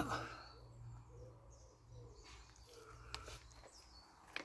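Faint bird calls, among them a low cooing, over quiet outdoor background with a faint low hum that fades about halfway through.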